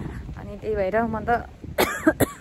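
A woman talking, then a short, sharp cough near the end.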